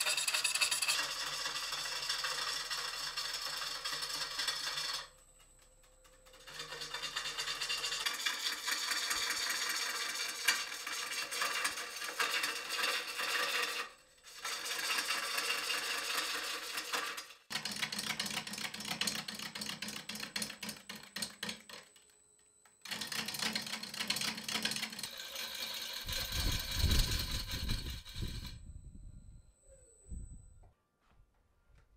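Bowl gouge cutting the outside of a large green-wood bowl spinning on a wood lathe: a steady, rasping shear of wood with a fast, even chatter running through it. It breaks off briefly several times, and a low rumble comes in near the end.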